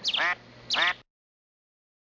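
Two duck quacks, each a short call falling in pitch, about three-quarters of a second apart; then the sound cuts off to dead silence.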